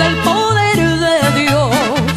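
Mariachi music: a bass line steps from note to note under a melody that swells into a wide, wavering vibrato near the end.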